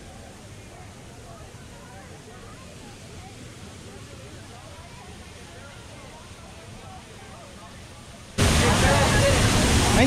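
Rainforest waterfall rushing steadily, with people chattering faintly in the background. About eight seconds in, the water sound suddenly becomes much louder and closer, with voices over it.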